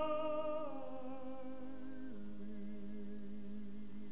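Classical tenor voice singing softly in a live song recital: a loud held note fades out just under a second in, then the voice holds long, quiet notes with vibrato that step down in pitch, the last lower one starting about two seconds in.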